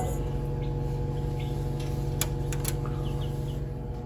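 Steady electric hum of a small egg-incubator fan, with a few sharp clicks a little past halfway.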